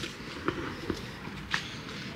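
A few soft footsteps on asphalt over a faint outdoor background hum.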